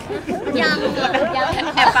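Speech only: a woman answering in Thai, with other voices talking over her.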